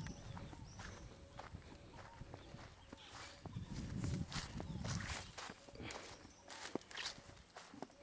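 Footsteps through dry grass and dead brush, with irregular crackles of stems and leaves throughout.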